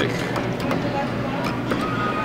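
Arcade ambience around a claw machine: a steady low hum with faint indistinct voices and small clicks, and a thin steady electronic tone starting near the end.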